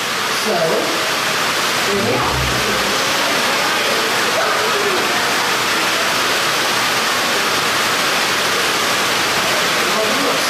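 Heavy rain pouring down in a steady, loud hiss of downpour that stays even throughout.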